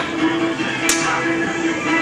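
Arcade music and game-machine tones playing steadily, with one sharp knock a little under a second in.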